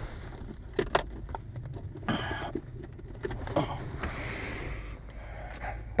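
Handling noises in a van's cabin: a few sharp clicks and two short bursts of rustling as a small object is fumbled for and picked up, over a steady low hum from the vehicle.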